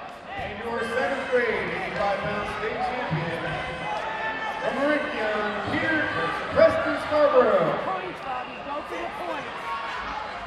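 Spectators in a large gym hall shouting and yelling at once, several voices overlapping with no clear words, louder and sharper in bursts, the loudest a little past six and a half seconds in.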